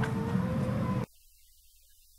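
A dense, low, steady background noise with a faint steady tone, cut off abruptly about a second in, leaving near silence.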